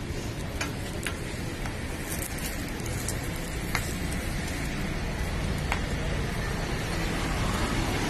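Parathas frying on a large flat griddle: a steady sizzle over a low rumble, with a few sharp ticks scattered through it.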